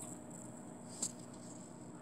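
Quiet indoor room tone with a faint steady hiss, and a single short click about halfway through.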